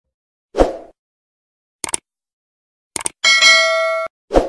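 Subscribe-button animation sound effects: a short thump, two quick double mouse-clicks, then a bright notification-bell ding that rings for about a second near the end.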